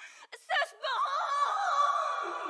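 A woman's high-pitched, drawn-out cry: a short vocal burst, then a long held note from about a second in that slowly fades.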